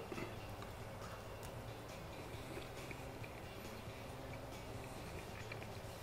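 A person quietly chewing a mouthful of chicken pot pie: faint, scattered soft clicks over a low, steady room hum.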